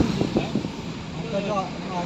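Road and engine noise of a moving car, heard from inside the cabin, with faint voices talking in the second half.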